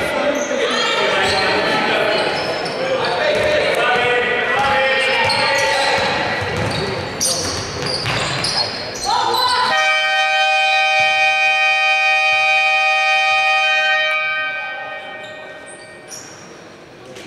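Indoor basketball play, with the ball bouncing on the hardwood and players' voices calling out, echoing in a large hall. About ten seconds in, the arena's electronic game horn sounds one steady buzzing tone for about five seconds and then fades, signalling the end of the period.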